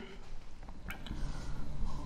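Marker pen writing on a whiteboard, with faint squeaks and a light tap about a second in.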